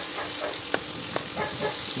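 Onions, garlic and pork sizzling in hot oil in a ceramic-coated frying pan while a plastic spatula stirs them, with a few light clicks of the spatula against the pan.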